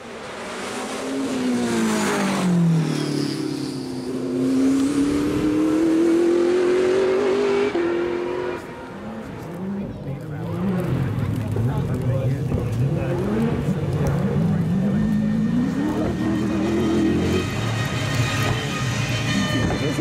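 Porsche 963 LMDh prototype's twin-turbo V8 at race revs, loud. Its pitch falls at first, then climbs steadily through a long run that ends in a sudden drop at an upshift about eight seconds in. After a quieter stretch it climbs again and shifts near the end.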